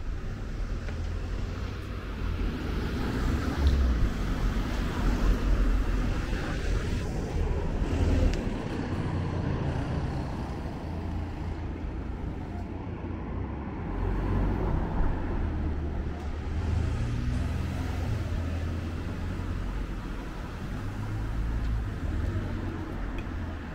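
Road traffic: several cars driving past on a narrow street, their engine and tyre noise swelling and fading as each goes by, over a steady low rumble.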